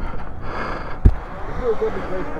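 Low wind rumble on an action-camera microphone, with one sharp knock about a second in, likely from the camera being handled, and faint voices near the end.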